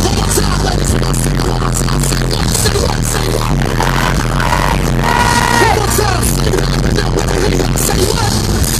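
Live music played loud through a large concert PA and heard from within the crowd, with a steady bass line and a sung phrase about five seconds in.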